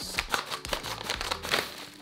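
Scissors cutting through a padded paper mailer, then the mailer crinkling and rustling as a book is slid out of it: a dense run of crackles and rustles.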